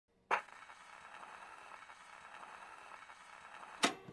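Intro sound effects: a sharp hit, then a faint crackling hiss, then a second, louder sharp hit near the end, with a short ringing tone after it.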